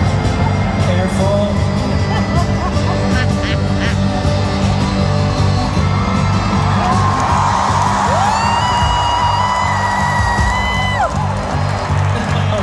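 Arena crowd cheering and chattering over music with a steady beat from the PA. About eight seconds in, someone close by lets out one long high yell, held for about three seconds before it drops away.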